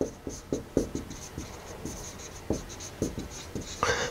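Dry-erase marker writing on a whiteboard: a quick run of short strokes and taps, many with a faint high squeak.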